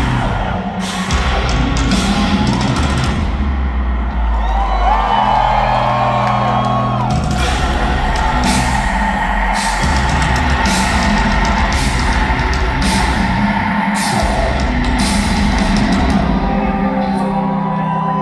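Live rock band playing loud, with heavy guitars, bass and drums and a vocalist's voice rising over the band in the middle and again near the end.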